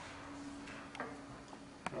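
Light clicks from transparencies being handled on an overhead projector, a soft one about a second in and a sharper one near the end, over a faint steady hum.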